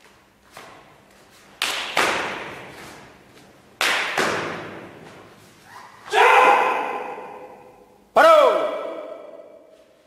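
Four sharp cracks from taekwondo strikes and stamps in pairs, echoing in a hall, then two loud kihap shouts about two seconds apart, the second falling in pitch.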